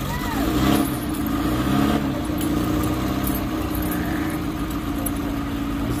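An engine running steadily at idle, a continuous hum, with faint voices in the background.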